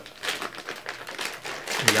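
Clear plastic wrapping around a wax melt crinkling in the hands, a steady run of small clicks and crackles.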